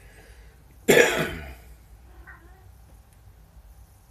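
A single loud cough from a person close to the microphone, starting abruptly about a second in and trailing off over about half a second.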